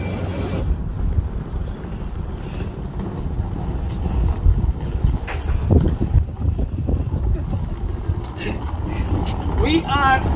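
Wind buffeting the microphone outdoors: a loud, uneven low rumble.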